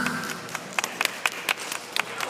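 Scattered audience clapping: a handful of separate hand claps at an uneven pace, as the last of the music dies away at the start.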